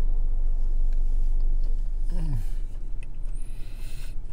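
Steady low hum of a car's engine idling, heard from inside the cabin. About two seconds in comes a short, low, falling 'mm' from someone eating.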